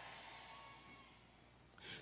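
Near silence: a faint breath from the speaker fading out, then a short intake of breath just before speech resumes.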